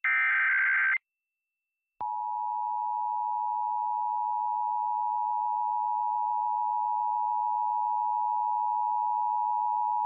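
Emergency Alert System Required Monthly Test received off an FM station. First comes the last one-second burst of the SAME digital header data, then a second of silence. About two seconds in, the steady two-tone EAS attention signal starts and holds to the end.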